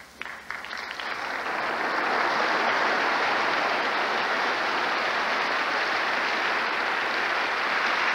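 A large audience applauding: a few separate claps at first, then the applause swells over about two seconds and holds steady.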